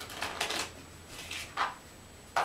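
Pages of a small children's picture book being handled and turned: several short papery rustles and soft taps, the first just after the start and more at about a second and a half.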